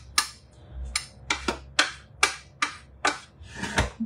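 Wooden spoon knocking and scraping against the stainless steel Thermomix bowl while stirring diced onion: a run of quick knocks, about two a second. The stirring checks that the food has not stuck to the bottom.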